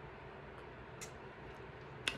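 Quiet room tone with one faint short click about a second in.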